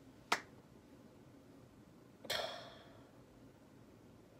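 Quiet pause with one sharp click near the start, then a short, soft exhale about two seconds in.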